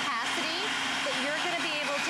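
NutriBullet Veggie Bullet's electric motor running with a steady hum as a yellow squash is pushed through its spiralizing blade, with voices exclaiming over it.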